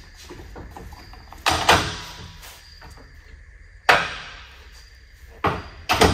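Folding metal scissor steps clattering as they are collapsed and slid back into their storage mount under a camper truck's rear bumper: several sharp metal clanks with light rattling between them, the loudest about four seconds in.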